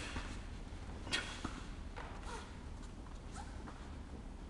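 Taekwon-do pattern movements: a few sharp swishes and snaps of the uniforms with thuds of feet on the mat, the loudest about a second in.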